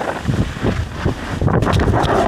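Wind buffeting a handheld action camera's microphone as a skier moves down a slope, with rough rubbing and a run of knocks and thumps that grow loudest in the last half-second as the skier falls and the camera is thrown about.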